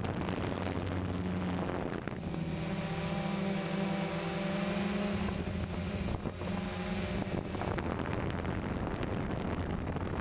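DJI Phantom quadcopter's motors and propellers humming steadily in flight, with wind noise on the microphone. A higher whine of stacked tones comes in about two seconds in and drops away about seven and a half seconds in, as the motor speed changes.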